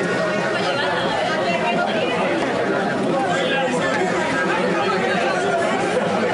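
Crowd chatter: many people talking at once in a steady babble of voices.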